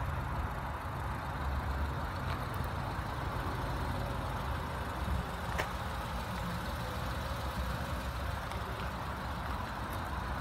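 Renault Clio Gordini's engine idling steadily, heard from outside the car, with a light click about halfway through.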